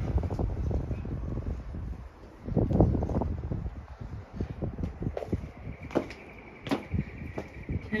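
Footsteps on a concrete path with wind buffeting a handheld phone microphone: gusty rumbling at first, then a string of short knocks about every half to three quarters of a second. A thin steady high tone sounds over the last two seconds.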